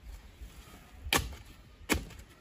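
A steel shovel blade driven into dry, lumpy soil twice: short, sharp strikes a little past a second in and again near the end.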